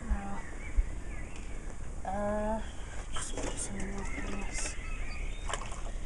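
A person humming or murmuring three short, level low notes, with brief rustling and a couple of light knocks as items are handled.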